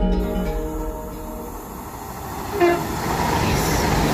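A train passing close by: a short horn note about two-thirds of the way in, then the rushing noise of the train growing loud and holding steady.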